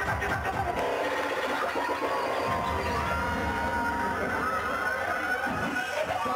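Loud dancehall music from a live show over a nightclub sound system, with a steady heavy beat, held melodic lines and a cheering crowd underneath.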